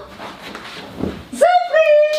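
Quiet for the first half, then a loud excited shout of "Surprise!" drawn out into one long held cry.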